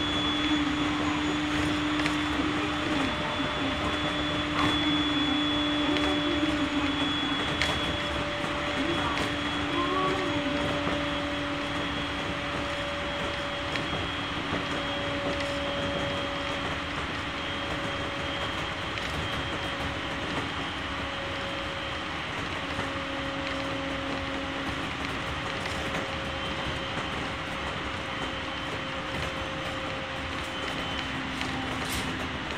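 JR East 701-series electric train running, heard from inside the passenger car: a steady electric motor whine over the rushing noise of wheels on track, holding nearly one pitch with only a slight drift.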